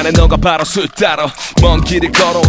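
Hip hop track: a man raps a verse in Korean over a beat, with a heavy kick drum about half a second in and again near the end.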